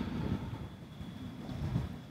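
Low, rumbling outdoor background noise with no clear events, easing off a little about a second in.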